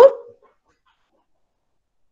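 A woman's voice finishing a word with a rising, questioning pitch in the first moment, then complete silence.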